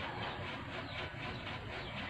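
Faint steady background hiss: room tone and recording noise in a pause with no speech.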